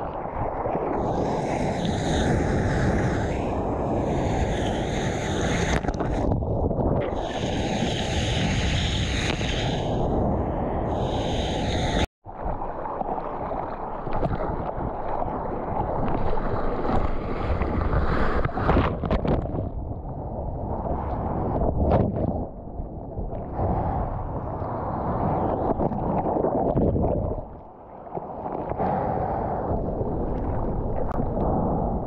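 Seawater rushing and splashing around a GoPro held at water level, with wind buffeting the microphone. The sound cuts out abruptly for an instant about twelve seconds in, then continues as foamy whitewater sloshing around the camera.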